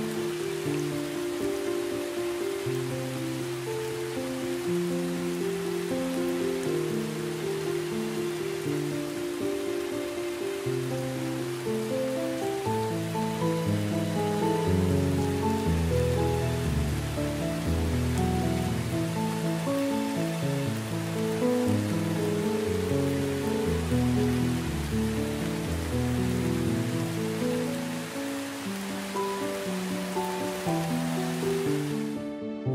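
Steady rain with slow, melodic relaxation music laid over it. Fuller low bass notes join about twelve seconds in and drop away again a few seconds before the end.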